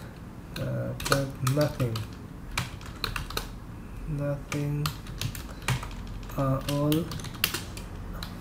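Computer keyboard typing: irregular, clicking keystrokes as text is entered into a code editor.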